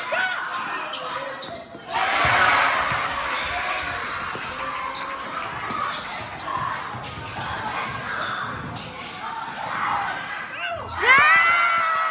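Basketball game sounds in an echoing gym: a ball dribbling on the hardwood floor, with spectators and players talking. Near the end comes a loud, long, high-pitched call that rises and then falls.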